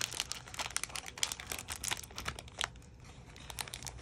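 A sugar cookie's clear plastic envelope crinkling and crackling as it is pushed into a snug cardstock treat box. The crackles come thick at first and thin out about three seconds in, as it slides into place.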